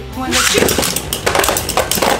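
Two Beyblade spinning tops, a metal-wheel Burn Phoenix and a plastic Burst Cho-Z Revive Phoenix, launched into a clear plastic stadium. About half a second in they land and clatter against the bowl and each other in a rapid run of sharp clicks and clinks.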